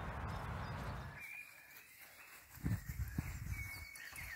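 Wind rumbling on the microphone outdoors, cut off suddenly about a second in; after it, a quieter open-air background with faint bird chirps and a few soft footsteps on grass.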